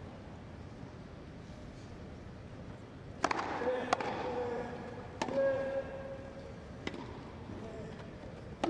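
Tennis rally on a grass court: four sharp racket strikes on the ball, starting about three seconds in with the serve. Short voiced grunts from a player follow the first and third strikes.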